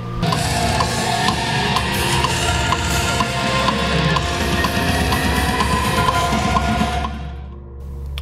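Heavy metal music, a full drum kit with electric guitars, that fades out about seven seconds in.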